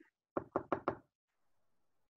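A quick run of about five knocks on a hard surface, all within just over half a second.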